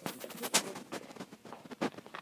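Handling noise: fabric rustling and irregular sharp clicks and knocks as pinned fabric rows are moved into place at the sewing machine, which is not yet running.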